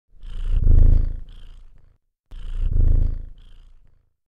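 A cat purring: two purrs of about two seconds each, each swelling and then fading away, with a brief silent gap between them.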